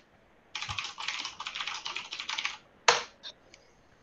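Quick typing on a computer keyboard, a fast run of keystrokes lasting about two seconds from half a second in, followed about three seconds in by a single louder click.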